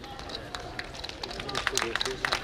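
Scattered audience clapping after a poem ends: a few sparse claps at first, growing thicker and louder about a second and a half in.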